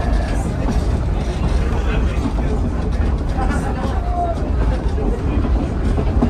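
Pacific Electric car 717, a 1925 electric railcar, running along the track, heard from inside the passenger cabin: a steady low rumble of wheels and running gear on the rails. Passengers chat quietly over it.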